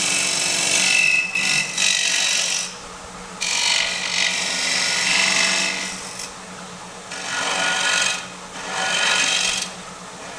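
A spindle gouge cutting the face of a spinning basswood bowl blank on a Robust wood lathe: a hissing, scraping cut in several passes with short breaks between them, over the lathe's steady hum.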